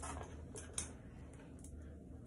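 Quiet room tone with a steady low hum and a few short, light clicks in the first second.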